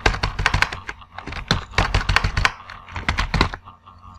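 Computer keyboard typing: quick bursts of keystrokes with short pauses between them.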